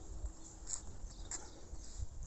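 Quiet outdoor street ambience: a low, uneven rumble with two faint, short high chirps, one under a second in and one past the middle.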